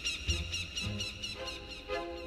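Eerie orchestral film score: a rapid repeating high chirping figure, about six a second, over two low notes. A held tone comes in near the middle.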